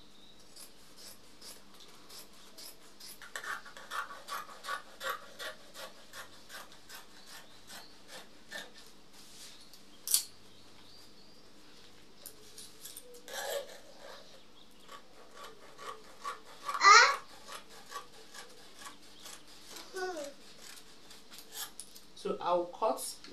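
Hands rubbing and smoothing mikado fabric flat on a floor, over a steady run of light clicks, about three a second. Late on, a brief loud rising pitched sound stands out above the rest.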